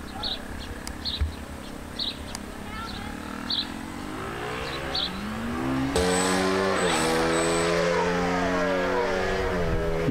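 Several motorbike engines running on a nearby track, growing louder from about three seconds in and loudest from about six seconds. Their pitch repeatedly rises and then drops as they rev and shift.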